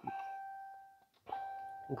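Two soft electronic beep tones from the Uconnect 4C head unit as climate control buttons are pressed, one at the start and a second about a second and a quarter in, each a single steady tone that fades away over about a second.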